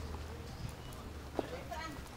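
Footsteps of people walking on a paved path, hard soles clicking in an irregular patter, with one sharper click about one and a half seconds in. A short bit of voice comes near the end.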